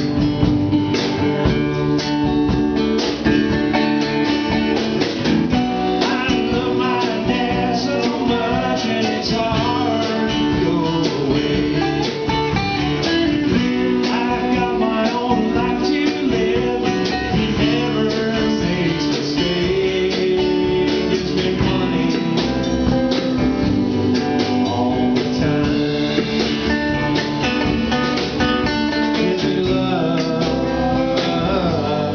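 Live country-blues band playing: two strummed acoustic guitars over upright bass and a drum kit keeping a steady beat.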